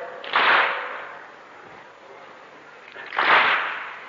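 Two unison strokes of a mourning crowd beating their chests (latm) in time with the lament. One comes about a third of a second in and the other about three seconds in, each a short, smeared slap.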